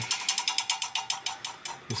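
PC cooling fan spinning up at power-on with its blades striking a cooler that sits too close, a rapid ratchet-like clatter of about eight clicks a second over a faint whine.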